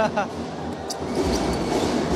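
Steady crowd noise in a basketball arena, with the ball bouncing on the hardwood court during play.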